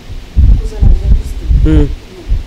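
Loud, low thumps on a handheld microphone held close to the mouth, with a short burst of voice near the end.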